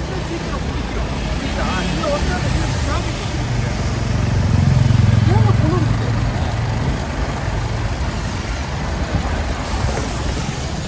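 City street traffic dominated by the low running hum of a stationary double-decker bus's engine, swelling to its loudest about halfway through as the bus's rear engine compartment is passed close by, with other vehicles going by and passers-by talking.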